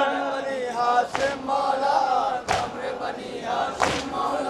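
A crowd of men chanting a Muharram noha together, with three loud slaps of matam (chest-beating) about 1.3 s apart.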